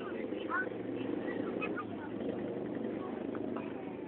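A steady low mechanical hum, with faint scattered voices over it.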